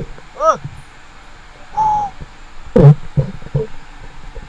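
A diver's voice and breathing at the water's surface. There is a short hoot that rises and falls in pitch about half a second in, a held tone near two seconds, and a loud breathy gasp near three seconds.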